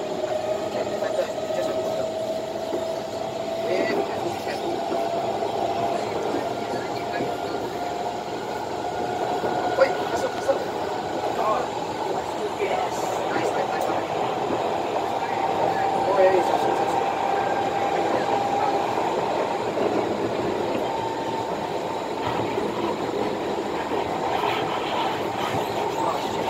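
Interior running noise of a Kawasaki C151 metro train under way: a steady whine from the traction motors that slowly rises in pitch as the train picks up speed, over a constant rumble of wheels on track.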